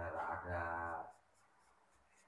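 A marker pen drawing on paper: several short, faint strokes of the felt tip across the sheet, heard mainly in the second half after a voice.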